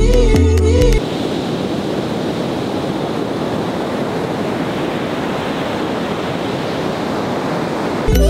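Ocean surf breaking and washing up on a sandy beach, a steady rushing sound. Music plays for about the first second and then cuts off suddenly, leaving only the surf.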